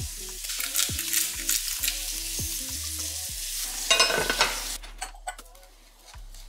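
Eggs frying in a pan: a steady sizzle with crackling spatters, loudest about four seconds in, then dying away about five seconds in.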